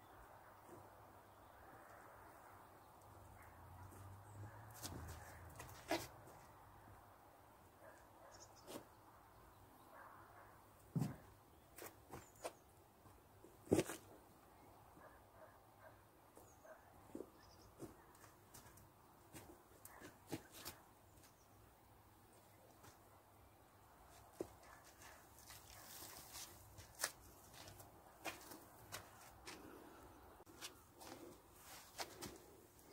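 Quiet soil work: a hand spreading and levelling loose soil in a wooden raised bed, with faint rustles and a scattered handful of short knocks and clicks, the sharpest about a third and halfway through.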